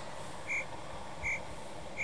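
Chirping ambience sound effect: short high chirps repeating evenly, about one every three-quarters of a second, over a faint steady hiss. It is the classic "crickets" gag marking an awkward silence after a joke falls flat.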